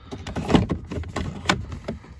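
Plastic speaker-surround trim being fitted over the door speaker of a MINI F56 door card: rubbing and knocking of hard plastic against the door panel, with two sharp clicks, about half a second in and a second and a half in.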